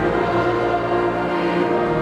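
Choral music: a choir singing long, held chords.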